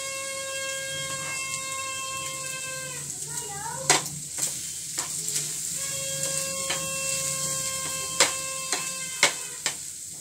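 Scrambled eggs sizzling in a frying pan on a gas stove, with a metal spoon scraping and knocking against the pan as herbs are sprinkled in and the eggs are stirred; the sharpest knocks come about four and eight seconds in. A steady pitched tone is held in the background twice, for about three seconds and then about two.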